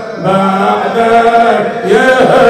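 A man chanting a mournful Arabic elegy, drawing out one long, slightly wavering note after a brief breath. A new phrase begins near the end.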